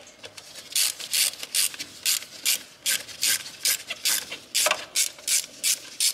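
A hose clamp on a diesel fuel filter's inlet line being loosened with a hand tool, giving a short rasping click with each stroke, about two to three a second.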